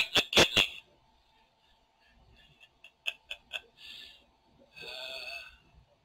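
A run of sharp clicks and clunks at the start, then a few lighter ticks and two short bursts of noise, over a faint steady hum: a cassette recorder's keys and mechanism being worked.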